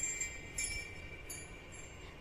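Faint high chime tones ringing, struck afresh about every two-thirds of a second and fading between strikes.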